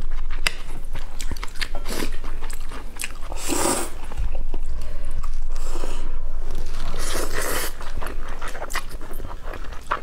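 Close-miked eating of spicy instant noodles: wet chewing with many small mouth clicks, and two longer slurps of noodles about three and a half and seven seconds in.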